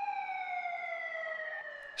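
Overhead crane hoist's electric motor whining as it winds down: a single high tone slowly falling in pitch and fading out near the end.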